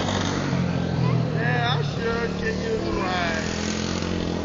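A steady low motor drone runs throughout. Over it, a few short, high-pitched voices call out, about one and a half seconds and three seconds in.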